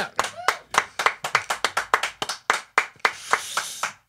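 A few people clapping by hand in a small room: separate, uneven claps rather than a dense roll, with a brief voice near the start.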